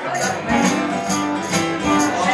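Acoustic guitars strummed together with an amplified guitar in a live home jam, over a steady high shaking beat about four times a second.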